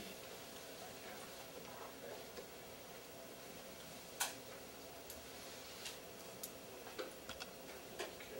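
Quiet room tone broken by a few light clicks and taps from someone moving about. The sharpest click comes about four seconds in, with several smaller ones over the following three seconds.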